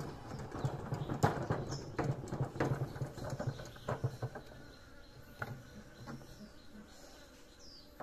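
Hand-cranked bucket honey extractor spinning comb frames in its wire basket, with a rhythmic rattle and clatter of the crank, frames and metal basket, while honey is spun out of the combs. The clatter eases off after about four and a half seconds, and a few bird chirps are heard.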